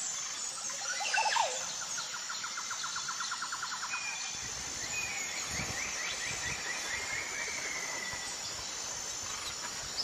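Songbirds calling over a constant high insect-like hiss. A burst of gliding calls about a second in is the loudest moment. A rapid, even trill follows for a couple of seconds, then a second trill slides down in pitch.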